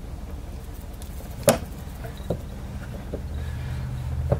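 Soap being cut and handled on a wooden wire soap cutter: one sharp click about one and a half seconds in, then a couple of lighter taps, over a steady low hum.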